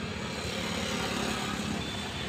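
Steady motor-vehicle engine noise with a low, even rumble and a background hiss, and no distinct events.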